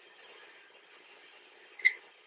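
Quiet room tone with one short, sharp clink near the end.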